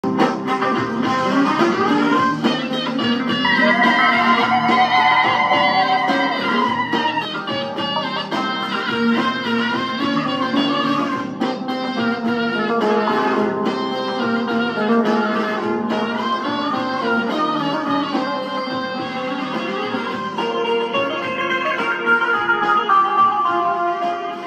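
Bağlama (long-necked Turkish saz) played solo: a steady, unbroken run of plucked notes with some held, wavering notes.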